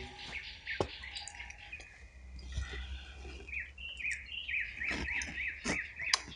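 A bird calling with a quickly repeated rising-and-falling note, about four a second, starting a little past the middle, with a few faint clicks scattered through.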